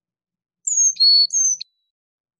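Carolina chickadee song: four clear whistled notes alternating high and low, the "fee-bee fee-bay" pattern, starting about half a second in and lasting about a second.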